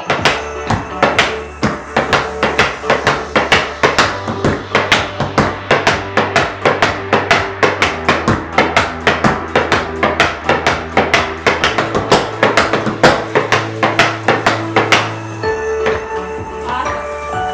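Metal taps on tap shoes striking an O'Mara sprung wooden tap floor in a rapid run of flaps and steps, several sharp strikes a second, over background music with a steady bass. The tapping stops shortly before the end.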